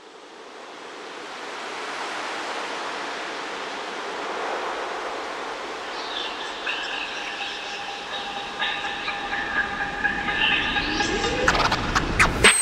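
Intro of a phonk track: a rushing wash of noise fades in. About halfway through, several held synth tones join it, and near the end a rising sweep climbs toward the beat drop.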